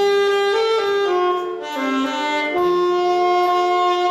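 Alto saxophone playing a slow melody: a few short notes stepping up and down, then a long held note from about two and a half seconds in.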